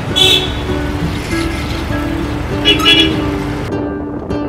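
Background music over town traffic noise, with short vehicle horn toots near the start and again about three seconds in. The traffic noise drops out near the end, leaving the music.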